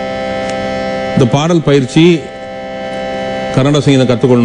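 A steady held drone note, rich in overtones, sounds throughout, while a man sings two short phrases over it with sliding, ornamented pitch bends in the manner of Indian classical singing, one about a second in and another near the end.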